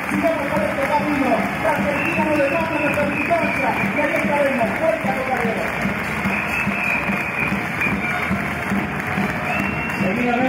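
Crowd applauding and cheering, with many voices raised together, as a speech ends.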